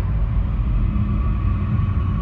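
Dark sound-design drone: a deep, steady rumble with a thin held tone above it.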